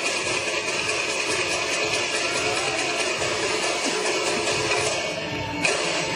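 Music with a steady high tone running through it.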